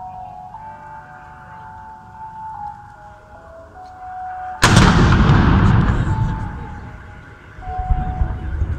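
A simple tune of single held notes plays. About four and a half seconds in, the fortress's signal cannon fires its noon blank shot: one very loud boom that rolls away over about three seconds.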